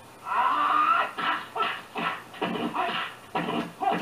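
Voices from a kung fu film's soundtrack heard through a TV speaker: one long drawn-out cry about a third of a second in, then a run of short, choppy shouts.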